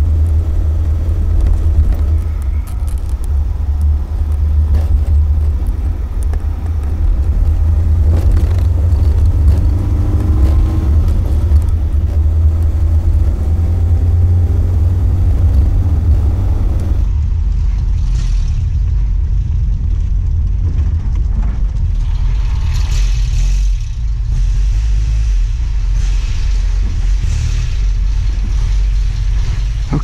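The 1965 Alfa Romeo Giulia Spider Veloce's 1600 twin-cam four-cylinder engine is driving on the road, with the open car's heavy low rumble underneath. The engine pitch rises and falls through the gears in the first half. About seventeen seconds in, the sound cuts abruptly to a duller, quieter stretch of the same drive.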